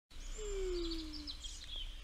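Birds chirping and twittering in quick high trills over a steady low hum, with one smooth tone gliding down in pitch near the start.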